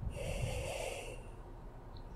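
A woman breathing audibly through her nose: one breath of about a second and a half.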